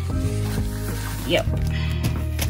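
Background music with steady sustained notes, over the rubbing of a paper tissue wiping spilled tea off a countertop.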